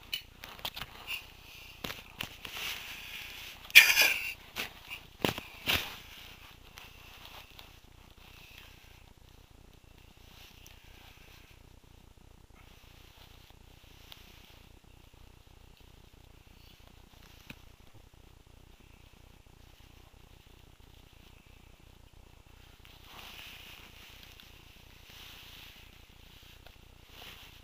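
Handling noise from a handheld camera being moved: a few sharp knocks and clicks in the first seconds, the loudest about four seconds in, then faint steady hiss, with soft rustling near the end.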